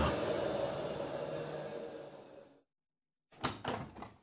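Washing-machine sound effect running down and fading out as its cycle finishes, followed by a moment of silence and two short knocks near the end.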